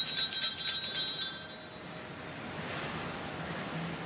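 Altar bells shaken in a quick, jingling peal that stops about a second and a half in, rung at the consecration of the host. Then a quiet hush of the church room.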